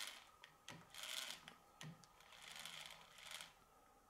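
Faint rubbing and scraping of fingers handling a circular saw disc and its steel washers on the saw arbor, in several short bursts that stop before the end.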